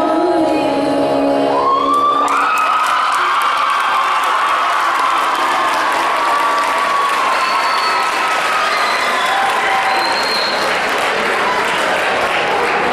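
A girl's unaccompanied singing voice holds its last note for about the first two seconds, then a theatre audience breaks into loud, steady applause and cheering, with shouted whoops and a couple of short high whistles later on.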